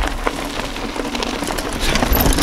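Plus-tyred mountain bike riding in over a dirt track and onto a sawdust pile: a steady crackle of tyre noise over a low rumble.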